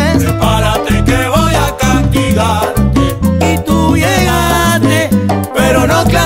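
A Uruguayan plena band playing live: a steady danceable groove of repeating bass notes and regular percussion strokes, with a melodic line moving over it.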